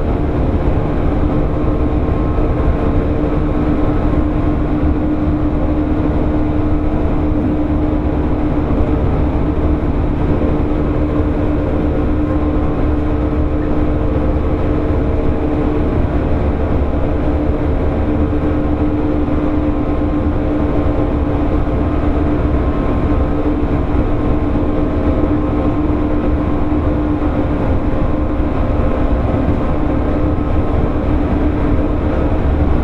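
Running sound inside a JR 115 series 1000-subseries electric train, recorded in motor car MoHa 114-1181: a continuous, even rumble with a steady hum.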